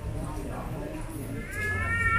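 A single high-pitched, drawn-out cry, rising then held, starting near the end, over a background of people talking.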